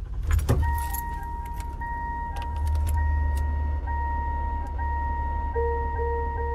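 Car sounds: keys jangling and clicking in the first second, then a car engine idling with a steady low rumble under a steady electronic tone. A car's warning chime starts pinging repeatedly near the end.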